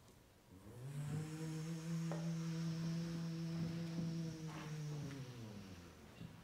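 A steady low hum standing in for an engine sound. It swells in about a second in, holds one even pitch for about four seconds, and fades away near the end.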